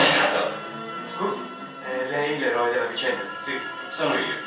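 A film soundtrack playing back over loudspeakers: music with voices.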